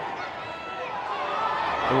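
Football stadium ambience with a small crowd: a murmur of voices and faint calls from the pitch, quietest about halfway through and building toward the end.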